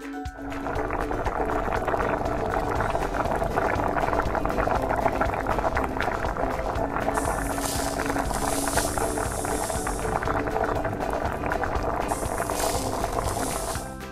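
A bubbling boiling sound effect for a toy saucepan on a toy stove, starting just after the beginning, over background music. Two spells of higher hiss join it, from about seven to ten seconds in and again near the end.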